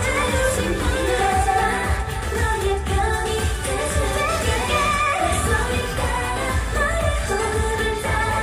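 K-pop song performed live: female group vocals singing over a pop backing track with a heavy, steady bass, heard through the stage PA.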